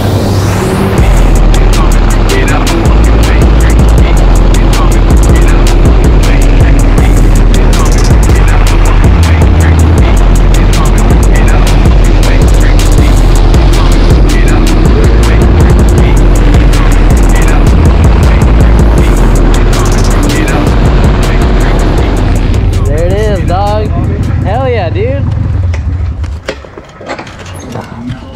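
Motorcycles riding on the road, engines running under heavy wind buffeting on the bike-mounted microphone. The sound stays loud and steady, then drops off near the end.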